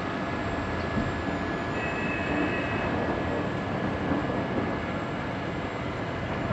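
Steady outdoor rumbling noise with hiss. A faint thin whine runs through it, and a second brief whine comes in about two seconds in.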